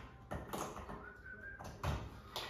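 A mains power supply being plugged into a wall socket: faint clicks and handling knocks, then a short low thump near the end.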